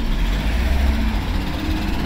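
A car passing close by on a wet road: steady engine and tyre noise with a strong low rumble.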